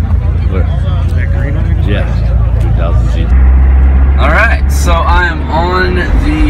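Low vehicle rumble with voices over it. About three seconds in it switches abruptly to the steadier, louder drone of a car driving, heard from inside the cabin.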